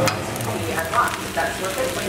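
Fried rice sizzling in a nonstick frying pan, with a spatula scraping and stirring through it in a few small clicks.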